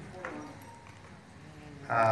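A pause in a man's speech through a hand-held microphone in a hall: quiet room noise with one small click, then his amplified voice starts again near the end.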